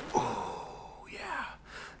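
A man's heavy, breathy sigh that trails off, followed by a second, softer breath about a second in.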